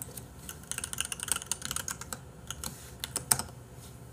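Typing on a computer keyboard: a quick run of key clicks, densest about a second in, with one sharper click near the end.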